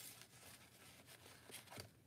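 Near silence, with faint soft rustles of paper tags and journal pages being handled.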